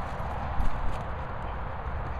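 Outdoor wind rumble on the microphone, with a few short dull thuds about half a second to a second in, as a boxer dog lunges and runs on the grass.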